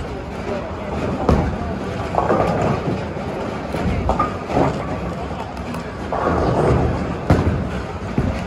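Bowling alley sound: background voices of players over the rolling rumble of balls, with a few sharp knocks of balls and pins, one about a second in and one near the end.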